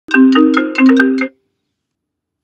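A phone ringtone: a quick run of bright, marimba-like notes stepping in pitch, lasting just over a second and then cutting off as the call is answered.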